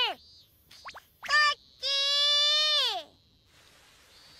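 High, childlike voice of a cartoon kitten calling out: a short call, then one long held call about a second long whose pitch drops at the end, as if calling for someone who is missing.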